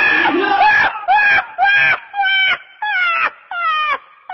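Screaming voices in a panic. After about a second they give way to a run of about five short, high cries, each falling in pitch at its end, roughly two a second.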